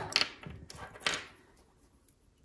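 A few short, brittle clicks and cracks as the woody scales of a pine cone are broken off by hand to get at the seeds.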